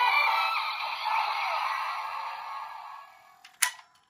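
DX Drive Driver toy belt's small speaker playing its electronic music, thin and without bass, fading out over about three seconds as its display goes dark. A single sharp plastic click comes near the end.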